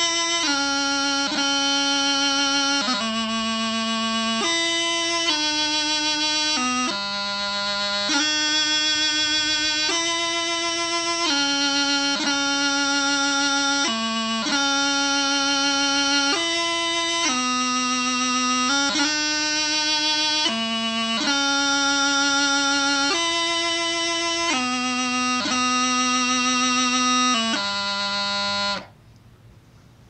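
Highland bagpipe practice chanter playing the second line of a piobaireachd ground: slow, long-held notes, each broken by quick grace-note flourishes, with the cadential E held long and the first theme note B cut short. It stops near the end.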